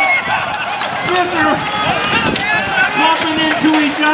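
Mostly voices: excited race-call speech with other people talking around it.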